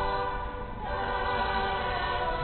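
A choir singing a hymn in long held chords, with a short dip about half a second in before the next phrase.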